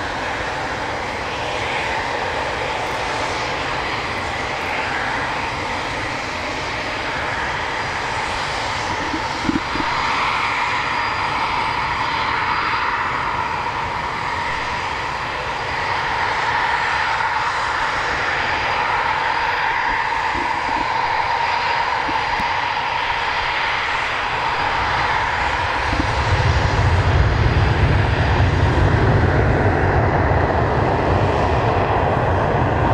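Two-seat Eurofighter Typhoon's twin Eurojet EJ200 turbofans running at low power with a steady whine. About 26 seconds in, a deep rumble comes in and the sound grows louder as the engine power comes up.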